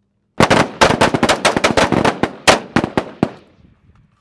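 Rapid rifle fire: about twenty shots in quick, uneven succession, starting a third of a second in and stopping just past three seconds, each crack trailed by a short echo that dies away after the last shot.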